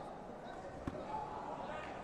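A single sharp thud about a second in, from the taekwondo fighters' feet or a contact between them, over a background of voices in a large sports hall.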